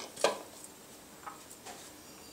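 Spatula knocking and scraping against a metal dish while dry breadcrumb filling is stirred: one sharp knock about a quarter second in, then a few faint scrapes.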